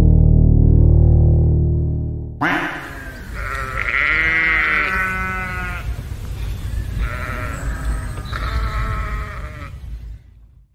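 Droning synth music cuts off about two seconds in. Then come long, wavering sheep bleats, three of them, over the low rumble of a car driving on a gravel road.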